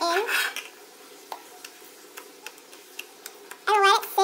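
Fluffy foam slime being scooped by hand out of an enamel bowl and pressed into a plastic tub, heard as scattered faint sticky clicks and small pops. A voice is heard briefly at the start and again near the end.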